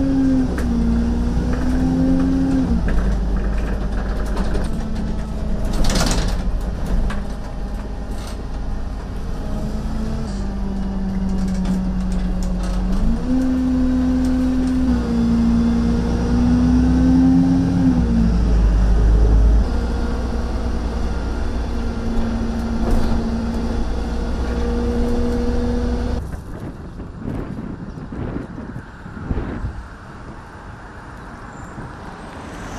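City bus engine and drivetrain running while the bus is driven, heard from inside the cab: a low rumble with a hum that rises and falls in pitch in steps as the bus speeds up and slows. A brief sharp noise about six seconds in, and the sound grows quieter over the last few seconds.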